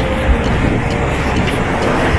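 Steady rumble of street traffic.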